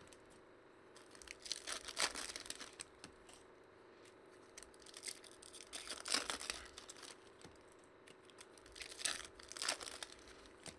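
Foil trading-card pack wrappers being torn open and crinkled by hand, in three bursts a few seconds apart.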